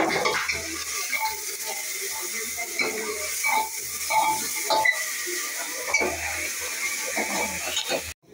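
Oil sizzling steadily in an aluminium pressure cooker while a metal ladle stirs, with scattered knocks and scrapes of the ladle against the pot.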